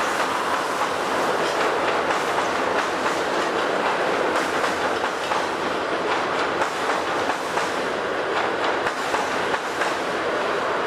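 Railway coaches rolling across a steel girder bridge: a steady rumble of wheels on rail with repeated clicks of the rail joints.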